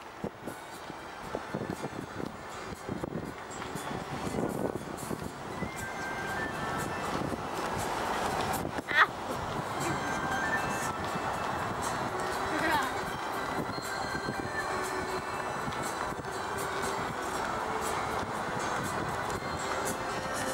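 Steady road noise from a moving Land Rover, engine and tyres with wind on the microphone, heard from inside the vehicle; one sharp knock about nine seconds in.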